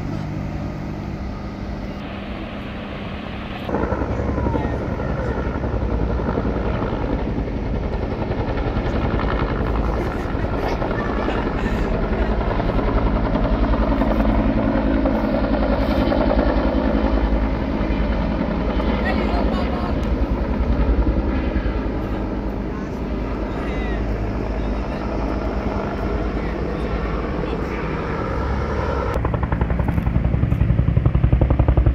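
Helicopter rotor beating rapidly with the engine running as a firefighting helicopter flies overhead, coming in suddenly about four seconds in and staying loud from then on. Before it there is a quieter steady low hum.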